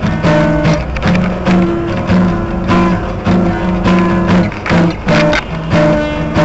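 Music: a guitar strumming chords in a steady rhythm.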